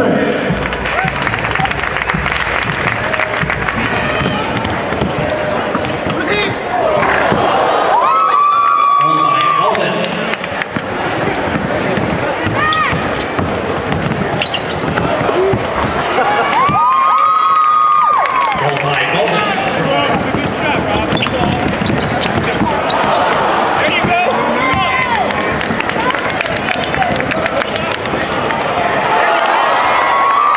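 Basketball game sound in an arena: a ball bouncing on the hardwood court among crowd noise and voices, with two held tones about eight and seventeen seconds in.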